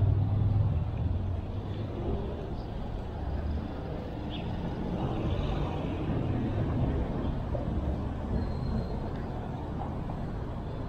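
City road traffic: cars running and passing close by in a steady low rumble, loudest in the first second.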